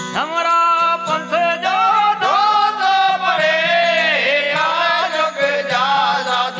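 Gujarati devotional bhajan: a singer holds long, ornamented notes that glide up and down over a steady drone, with a regular percussion beat of about three strokes a second.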